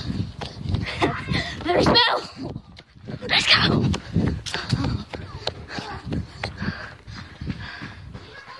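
A child running with a phone in hand: quick footfalls and knocks from the jostled phone, with children's voices shouting out about two seconds in and again about three and a half seconds in.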